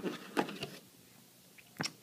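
Light handling noise of a cable being taken out of product packaging: a short rustle less than half a second in, then a single sharp click near the end.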